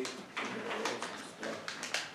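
Scattered light clicks and taps, with a faint low voice underneath.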